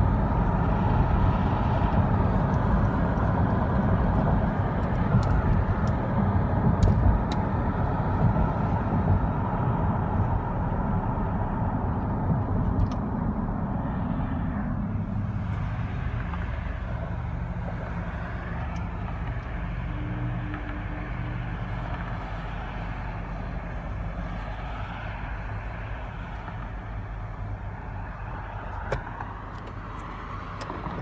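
A loud, steady vehicle rumble that fades away over about fifteen seconds, leaving a quieter background of traffic noise.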